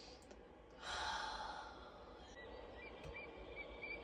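A woman's long sigh, a single breathy exhale about a second in that fades away.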